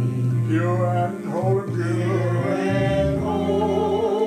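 A man singing a slow gospel song with a wavering vibrato, over held low chords from an accompanying instrument.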